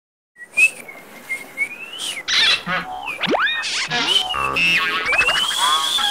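Whistled tones and chirps: a long wavering whistle, then a run of quick chirps and rising and falling glides, one sweeping steeply down, and a second long whistle near the end.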